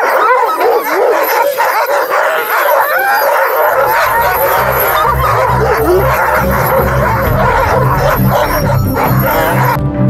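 A team of Alaskan Malamute sled dogs barking, yipping and howling together, many overlapping rising and falling calls at once. Background music comes in underneath a few seconds in.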